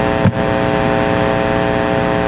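A loud, steady, engine-like drone: a constant buzzing hum over a noisy hiss, with one brief dip about a third of a second in.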